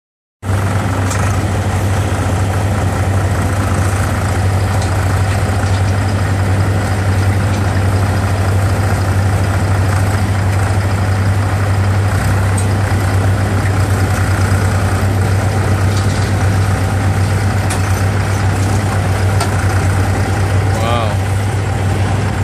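Engine of a truck-mounted forklift running steadily with a deep hum while it lifts a pair of one-ton quarry blocks off a flatbed trailer.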